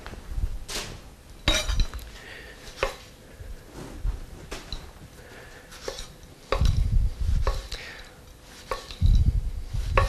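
Chef's knife slicing through tomatoes on a wooden cutting board: a series of irregular knocks as the blade meets the board, with a few heavier thumps in the second half.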